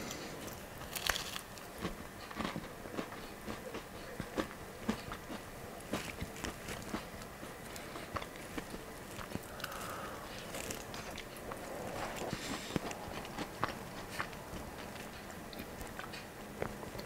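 Faint crackling and crunching of a crumbly, freshly baked vegan kourou pastry as it is broken apart by hand and then bitten and chewed, in many small scattered crackles.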